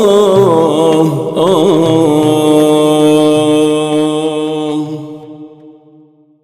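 Male voice singing Iraqi maqam: a wavering, ornamented vocal line that settles about two seconds in onto one long held note, which fades away near the end.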